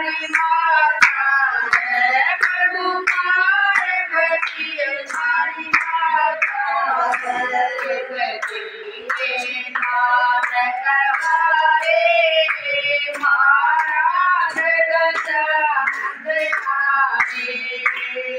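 A group of women singing a Hindu devotional bhajan together in unison, clapping along in a steady beat of about two claps a second.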